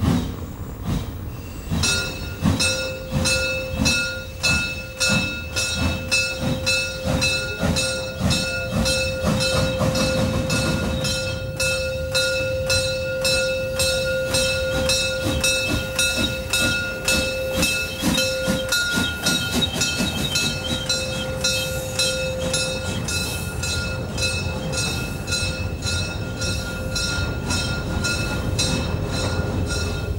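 Narrow-gauge steam locomotive 099 903-7 working a train past at low speed: regular exhaust chuffs at about two a second, quickening slightly. A sustained high squealing tone runs over the beats from about two seconds in and fades out near the end.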